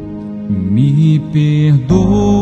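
Slow worship ballad with sustained keyboard chords; about half a second in, a man's voice begins singing a gliding line in Portuguese over them.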